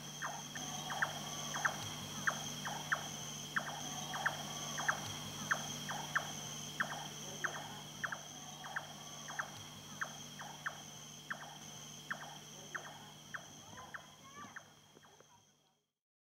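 Outdoor nature ambience: a short chirping call repeated evenly about every 0.6 s over a steady high drone. It fades out near the end.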